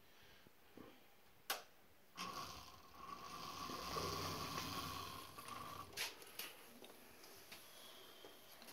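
Distributor test machine with a Hudson Jet distributor mounted, the distributor not yet oiled. It is switched on with a click, and its motor spins the distributor with a steady whine that swells and then eases over about three and a half seconds, followed by another click.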